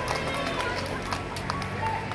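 Music playing, with voices and scattered short sharp taps over it.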